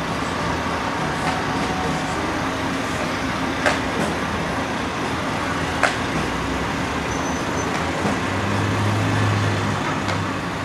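Steady outdoor city ambience with traffic noise, broken by two sharp knocks about four and six seconds in; a low hum swells briefly near the end.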